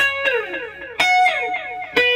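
Electric guitar, a Fender Jazzmaster through a delay, playing short picked two-note fifths about once a second; each note's echoes repeat and fade under the next.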